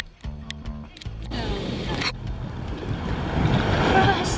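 A brief snatch of music, then a steady rush of wind on the microphone with water noise, growing louder toward the end.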